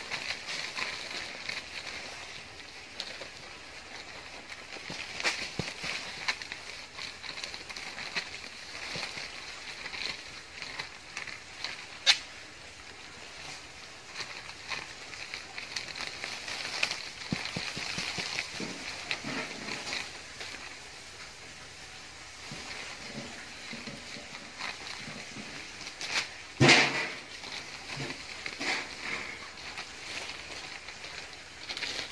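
Black plastic nursery bag crinkling and rustling as soil is pushed in and pressed down by hand, with scattered small crackles throughout and one louder knock about 27 seconds in.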